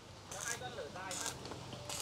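Faint crackle and hiss of an electric arc welder welding steel roof purlins, in short brighter spells, with faint voices behind it.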